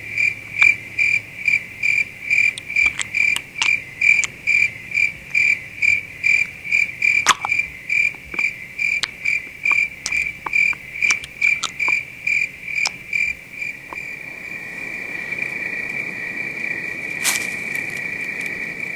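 Cricket-like insect chirping: a high chirp repeated about two and a half times a second, running together into a steady unbroken trill for the last few seconds, with a few faint clicks.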